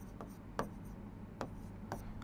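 Marker pen writing on a board: faint strokes with a few light ticks as the tip touches down.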